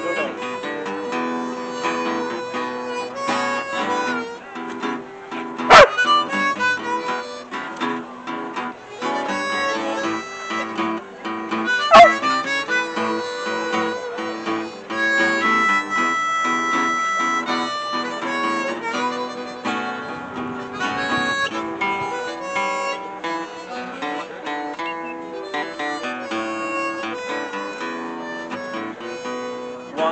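Blues harmonica solo over two strummed acoustic guitars in an instrumental break. A dog gives two short, sharp barks, about six and twelve seconds in; they are the loudest sounds in the passage.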